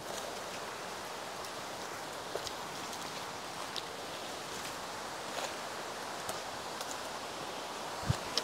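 Quiet forest ambience: a steady background hiss with a few faint rustles and small clicks scattered through it, as of people stepping through leafy undergrowth.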